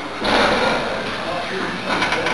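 A person's voice or breath, a loud noisy burst about a quarter second in that fades over about a second, with another starting near the end.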